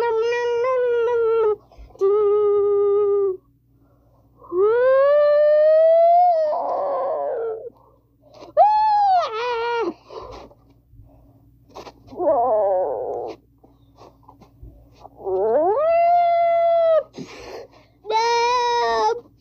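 A child's voice making long wailing, howling monster calls, about five in all. Some are held on one pitch and others rise and then hold, with short rough growls in between.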